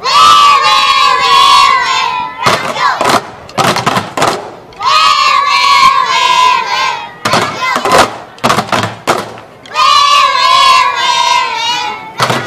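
A group of young children shouting a long held cry in unison three times, each about two seconds and sagging slightly in pitch. Between the shouts come quick clusters of drumstick strikes.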